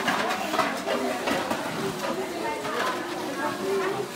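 Voices of children and adults talking in the background as a line of children shuffles forward.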